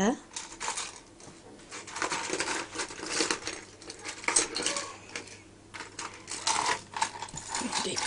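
Lego bricks rattling and clattering in a toy box as a small child rummages through them by hand, in irregular bursts.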